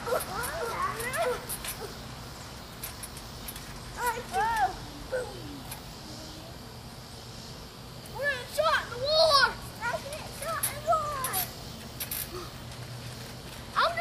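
Children playing on a trampoline, giving high, wordless shouts and calls in short clusters: near the start, about four seconds in, and again from about eight to eleven and a half seconds. A few light knocks come in the first three seconds.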